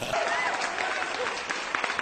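An audience applauds, with a few voices heard among the clapping.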